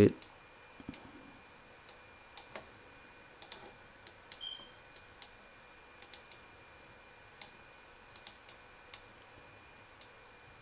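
Computer mouse clicking in irregular single and double clicks.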